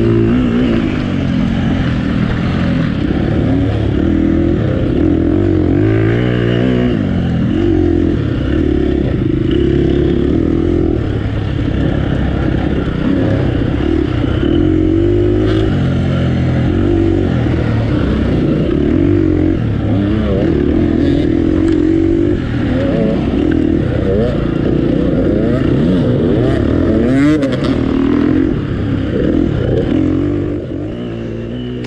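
Off-road racing motorcycle engine heard up close from the rider's chest, revving hard and dropping back over and over as the throttle is worked through the turns and gears of a race course.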